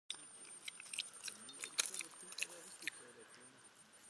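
A piglet snuffling and chewing in wet mud close to the microphone: a run of short, irregular wet smacks and clicks from its snout and mouth.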